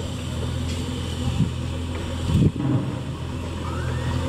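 An engine running steadily with a low drone, with a brief louder low thump about two and a half seconds in.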